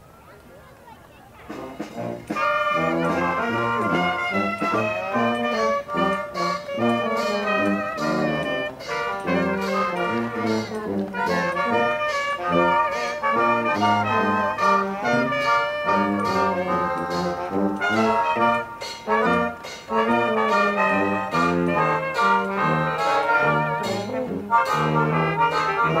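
A brass jazz band playing an upbeat tune, tubas carrying a bouncing bass line under saxophone and other horns. It starts about a second and a half in.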